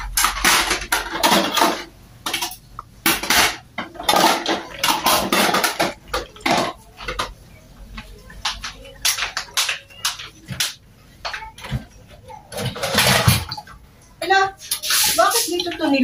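Hand-washing dishes at a kitchen sink: plates, bowls and utensils clinking and clattering against one another, with water splashing in spells during the first half.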